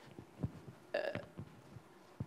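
A man's hesitant "uh" about a second in, between faint scattered footsteps on a hard floor.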